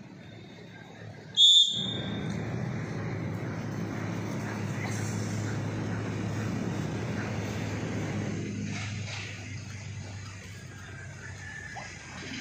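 A short, loud, high-pitched whistle blast about a second and a half in, then several seconds of steady low rumble that eases off after about eight seconds.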